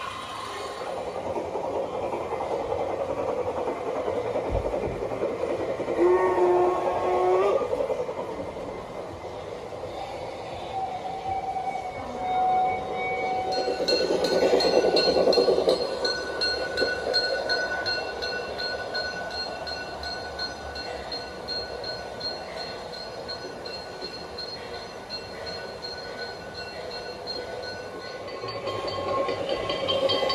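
LGB garden-scale model steam trains running on the track, a steady rolling rumble, with a sound decoder's locomotive whistle sounding twice, about six and eleven seconds in. A thin high steady tone sounds through most of the second half.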